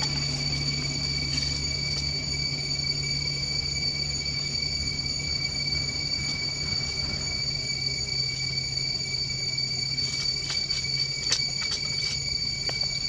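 A steady, high-pitched drone of forest insects, holding two even tones, over a low hum. A few light clicks come near the end.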